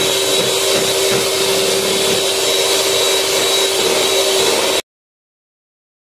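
Electric hand mixer running steadily, its beaters whisking a runny sponge-cake batter in a bowl. The sound cuts off suddenly near the end.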